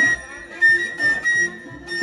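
Uzbek nay, a side-blown wooden flute, playing high held notes that break off briefly between phrases, over a quieter rhythmic accompaniment.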